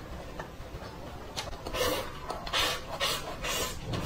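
Close-miked chewing of a mouthful of stir-fried pork and green peppers with rice, heard as a series of about five short noisy bursts roughly half a second apart in the second half.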